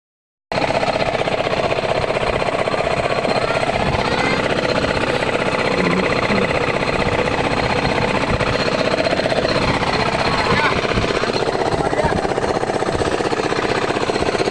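A diesel engine on a fishing boat running with a fast, steady chugging, with the crew's voices calling over it.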